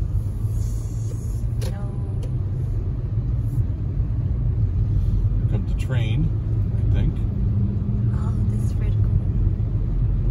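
Steady low rumble of a car driving on a snowy, slushy road, heard from inside the cabin.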